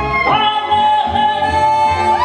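A woman singing a show tune with instrumental backing, sliding up into a long held note about a third of a second in, and sliding up into another note at the very end.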